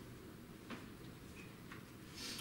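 Quiet room tone with two faint clicks about a second apart.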